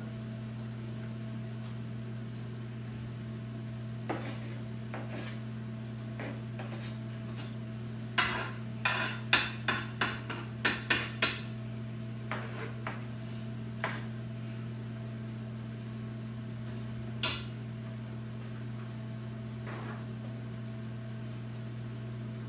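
Metal kitchen utensils knocking and tapping against a frying pan: a few single clicks, then a quick run of about ten sharp taps in the middle, over a steady low electrical hum.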